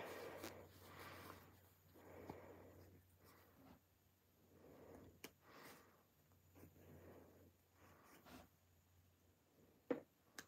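Near silence, with faint soft rustling of a silk jacket lining and a few small clicks as a seam ripper picks out its stitches, one about halfway through and another at the end.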